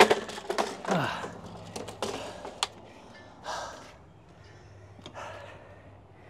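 Handheld gas leaf blower being pull-started. The recoil cord whirs with falling pitch about a second in, followed by a few clicks and rattles, and the engine does not catch: a hard-starting blower.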